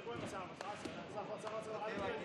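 Indistinct men's voices with a few dull thuds from two fighters grappling on a ring mat.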